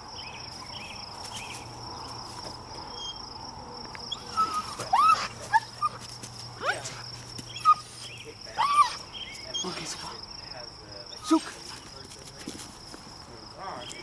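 German Shepherd puppy, held back by the collar and eager to be let go, giving a run of short yelps and whines that rise and fall in pitch, starting about four seconds in and stopping a few seconds before the end. Steady high chirring of insects runs underneath.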